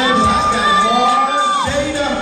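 Show music playing with the audience cheering and shouting, and a single high note held for about a second and a half before it drops away in pitch.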